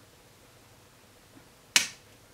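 A single sharp snap of a dog nail clipper closing on a Samoyed's claw, about three-quarters of the way in, against near silence.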